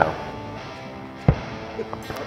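A single starting-cannon boom about a second in, the signal that opens the round, over background music.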